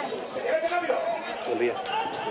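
Spectators' voices close to the microphone, several people talking at once in unclear chatter.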